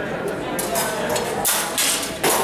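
Steel rapier and dagger blades clashing as two fencers exchange: a quick run of sharp metallic clinks through the second half.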